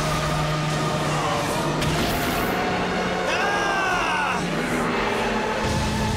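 Layered cartoon battle sound effects: a dense, steady rumble with a sustained low hum, under dramatic background music, and a wailing, pitch-bending cry about three and a half seconds in.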